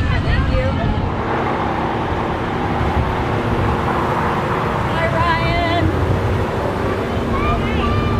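Cars driving slowly past with a steady low rumble of engines and traffic, while voices call out a few times, about five seconds in and again near the end.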